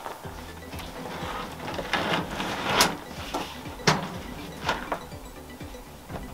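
Several separate knocks and clatters of a folded plastic-topped Lifetime camp table being lifted, carried and stood upright.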